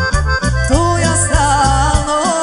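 Serbian folk (narodna) music played live: an accordion carries a wavering, ornamented melody over a bass line and a steady drum beat.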